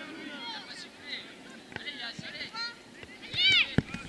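Children's voices calling and shouting during play, with one loud shout about three and a half seconds in and a sharp thud just after it.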